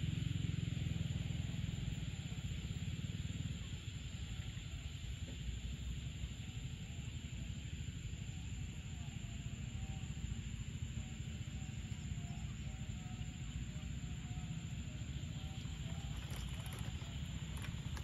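Evening ambience over wet rice paddies: a steady high insect chorus over a low wind rumble on the microphone, which eases about three and a half seconds in. Faint short tonal notes come and go through the middle.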